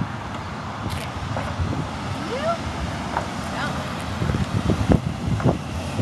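Wind rumbling on the microphone throughout, with a toddler's short babbling sounds and a few low thumps near the end.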